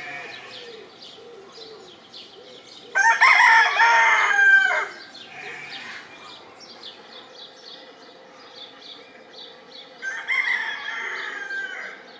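East Frisian Gull (Ostfriesische Möwe) rooster crowing: one loud crow about three seconds in, lasting nearly two seconds, then a second, quieter crow near the end. Small birds chirp faintly in the background.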